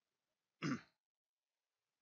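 A person clearing their throat once, a single short burst a little over half a second in.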